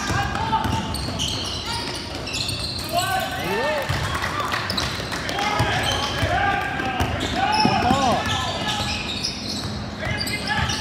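Basketball being dribbled on an indoor court during a youth game, with indistinct shouting and voices from players and spectators echoing in a large gym.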